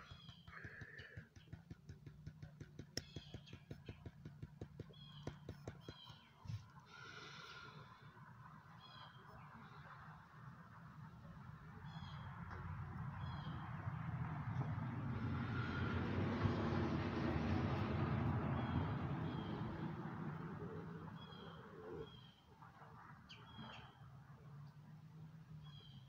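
Rapid, even tapping on the side of a gold pan, about five taps a second for the first few seconds: the tap method, which settles the gold to the bottom of the concentrates. Later a broad rushing noise swells up and fades away.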